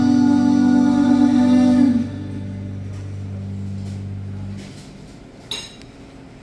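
Live band music: a held note over a sustained electric guitar and bass chord stops about two seconds in. The low bass notes ring on and die away by about four and a half seconds, leaving a lull with a brief click near the end.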